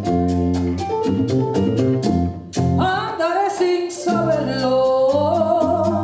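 Live Latin jazz band playing: regular percussion strikes over bass and keyboard chords. About halfway through, a woman's voice enters singing a long, gliding phrase.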